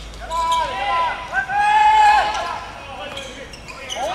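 Men shouting long, high-pitched calls across a football pitch during play, with a few sharp thuds of a football being kicked.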